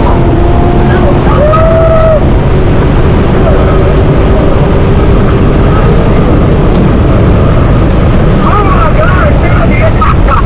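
Chevrolet Corvette C6's V8 running with tyre and wind noise, heard loud and steady from inside the cabin at highway speed, with a steady engine note through the first half. A voice comes over it near the start and again near the end.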